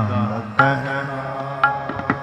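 Sikh classical kirtan: the sung phrase ends and a new held note of voice with harmonium begins about half a second in, and tabla strokes enter near the end.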